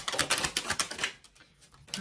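A deck of tarot cards being shuffled: a rapid fluttering run of card clicks lasting about a second, then a few faint card ticks.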